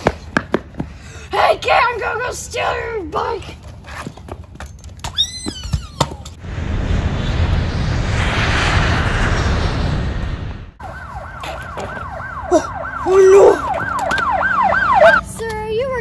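Police-style siren wailing rapidly up and down, about three sweeps a second, for the last few seconds, after a few seconds of steady rushing noise.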